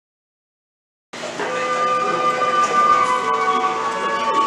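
Silence, then about a second in music starts abruptly: sustained chords of several steady held notes that shift every second or so.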